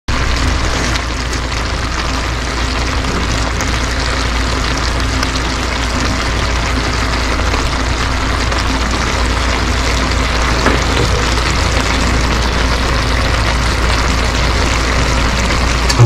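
Steady, fairly loud hiss-like noise with a low hum beneath it and no distinct events.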